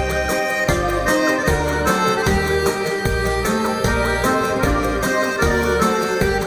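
Instrumental introduction by a Russian folk ensemble: an accordion plays the lead over a band with a steady, regular bass beat, before the singing begins.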